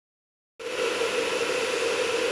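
Cooling fans of an eight-card GPU mining rig running steadily: an even rushing whir with a constant hum underneath, starting about half a second in.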